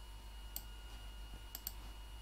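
Computer mouse clicks: a single click about half a second in, then a quick double click near the end, over a faint steady electrical hum.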